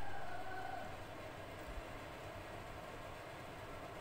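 A glass clinking, with a ring that fades away over about a second and a half. A light tap comes near the end.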